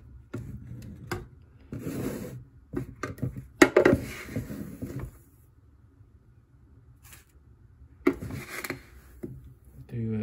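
Ground coffee being scooped out of a plastic storage canister and tipped into a coffee maker's reusable mesh filter basket: a few short scraping, rustling scoops, with a sharp plastic click about three and a half seconds in, then a pause and one more scoop near the end.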